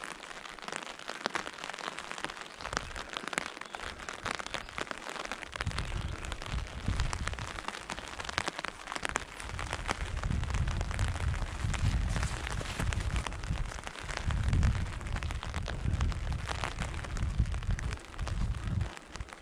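Rain falling on a fabric umbrella held just above the microphone: a dense, irregular stream of small taps. About six seconds in, a low rumble joins it.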